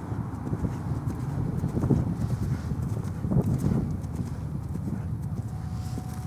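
Hoofbeats of a ridden horse on grass turf: dull low thuds in the rhythm of its gait, loudest about two and three and a half seconds in.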